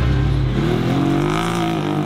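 Off-road race buggy engine running past at speed, its pitch rising and then falling.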